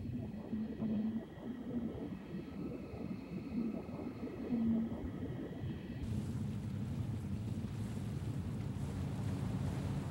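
Muffled underwater rumble with faint steady tones. About six seconds in it changes suddenly to a steady open-water sound: a boat engine running under a hiss of wind.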